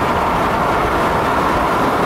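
Steady, loud rush of wind and road noise from a car driving at highway speed.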